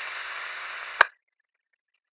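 Two-way radio static, a thin steady hiss left over from a radio transmission, cut off by one sharp click about halfway through as the transmission ends.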